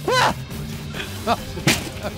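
A sledgehammer strikes a minivan's windscreen glass: one sharp, loud hit near the end. A short shout comes right at the start, over background music.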